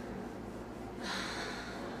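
A woman's audible breath in, about a second in and lasting about a second, taken in a pause before she speaks again.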